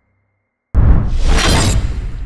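Silence, then about three-quarters of a second in a sudden loud, noisy sound-effect hit that swells brighter: a cinematic impact opening the soundtrack of a countdown intro template.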